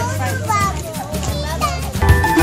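Young children's voices and chatter over background music with a steady bass line.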